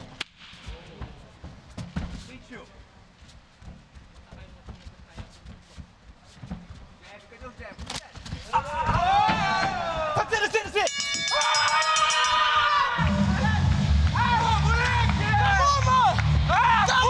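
Live cageside MMA fight audio with no commentary. At first it is fairly quiet, with scattered short thuds of strikes and footwork on the canvas. From about halfway, loud shouting from the corners and crowd takes over as one fighter is dropped, and a low steady rumble joins a few seconds before the end.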